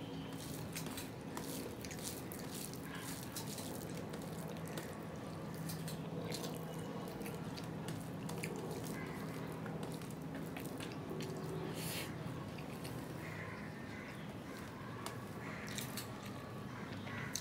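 Close-miked eating sounds: wet chewing and mouth clicks while fingers mix rice with mashed potato and flat-bean bhorta on a steel plate. The clicks come in an irregular string over a steady low hum.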